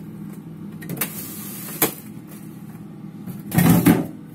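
Plastic freezer drawers of a frost-free fridge freezer being handled: two light clicks, then a louder sliding clatter near the end as a drawer is pulled out against its stop. A steady low hum from the running freezer lies underneath.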